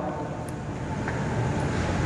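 Steady low rumble of background noise with no distinct events, rising slightly toward the end.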